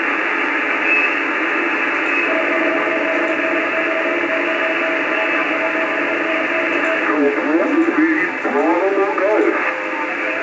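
Shortwave receiver audio from a FunCube Dongle SDR with an HF up-converter, demodulating the 20 m amateur band in sideband mode: steady band-limited hiss with nothing above about 3 kHz. A steady whistle-like tone runs from about two to seven seconds in, then garbled sliding tones and mistuned sideband voice follow as the tuning sweeps across stations.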